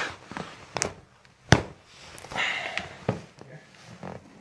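Joint cracks from a chiropractic toe and foot adjustment: one sharp pop about one and a half seconds in, the loudest sound, among several smaller clicks, followed by a short breathy sound.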